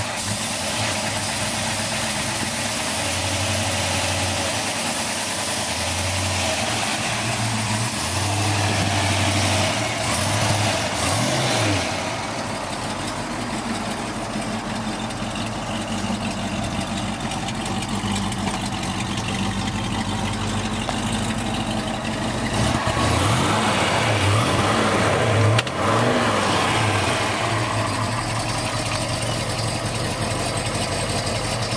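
Ford Mustang Boss 302's small-block V8 running at idle, revved briefly about ten seconds in and twice more between about 23 and 26 seconds in, each rev rising and falling back.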